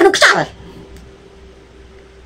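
A man's voice ends in a short, breathy vocal outburst in the first half-second. This is followed by a pause holding only a faint, steady hum.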